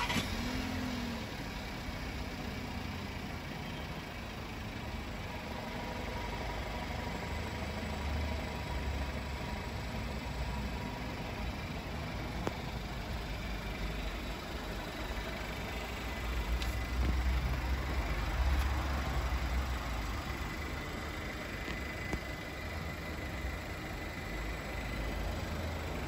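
Volkswagen Tiguan Allspace's 1.4 TSI four-cylinder petrol engine idling with a steady low rumble.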